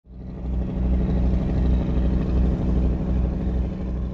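A steady, loud low rumble with a droning hum, fading in at the start.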